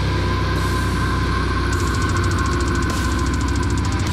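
Deathcore track of down-tuned guitars and drums with one long held high note and, from about halfway, rapid cymbal strokes. Over it is a deep guttural growl voiced into a hand-cupped microphone.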